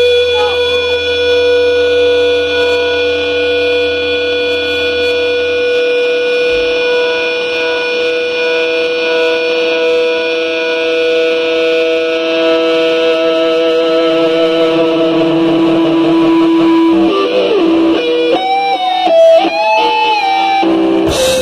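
Live progressive rock instrumental with a long, steady chord held ringing through effects. Near the end the lead electric guitar comes in with bent, wavering notes.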